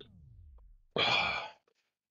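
A person sighs once: a short, breathy exhale about a second in. Before it, the tail of background music glides down in pitch and fades out.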